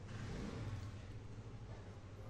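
Faint, steady low hum of background noise, with quiet handling as gloved hands lift a glass cream jar out of its box.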